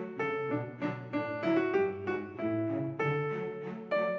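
Background piano music, a gentle melody of single notes and chords struck every few tenths of a second.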